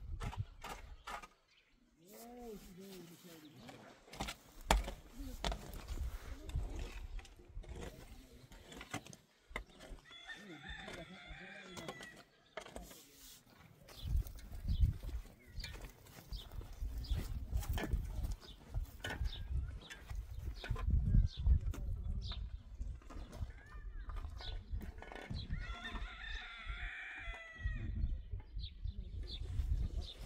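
Digging in dry, stony earth with a long-handled tool: repeated scrapes and knocks. A rooster crows twice, about ten seconds in and again near the end, and from about halfway there are heavier scrapes and thuds as a concrete ring is shifted into the hole.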